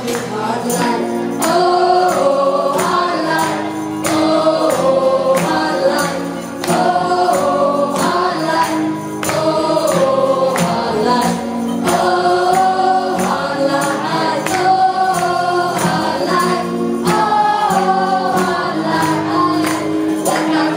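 Live acoustic band music: two acoustic guitars strummed under women's voices singing, with a tambourine shaken and struck on the beat.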